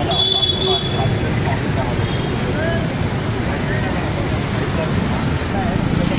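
Steady road traffic noise, with a short vehicle horn just after the start and people talking nearby.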